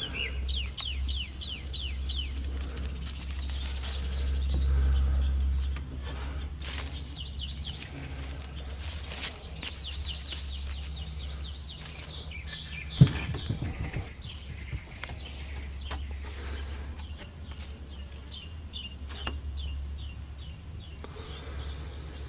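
A small bird singing repeated quick trills of short, falling chirps, in several bursts, over a steady low rumble that swells about four to six seconds in. A single sharp knock sounds a little past the middle.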